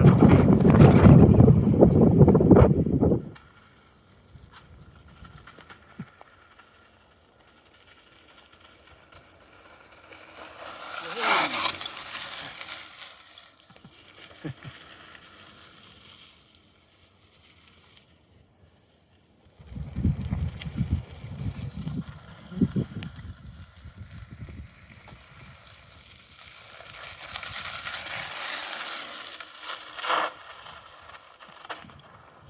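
Wind buffeting the microphone in gusts, loudest in the first three seconds and again from about twenty seconds in, over mountain bike tyres rolling on a dirt trail. There is a brief higher hiss about eleven seconds in and a softer one near the end.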